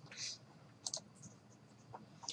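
A few faint computer mouse clicks, the clearest about a second in, with a short soft hiss near the start.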